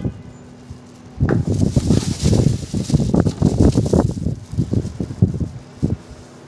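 Close, irregular rustling and handling noises, starting about a second in and lasting about four seconds, as the fish, cup and plastic bag over the bowl are handled.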